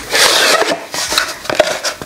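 Cardboard drawer-style gift box being handled and slid open: a scraping rustle of card on card during the first half-second or so, then a few small clicks and taps.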